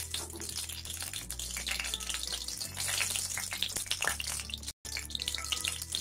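Two dried red chillies sizzling and crackling in a small pool of hot oil in a metal wok, with a steady hiss and many tiny pops.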